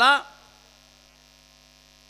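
A man's spoken word ends just at the start. Then comes a pause in which only a faint, steady electrical mains hum is heard through the microphone's sound system, made of several even tones.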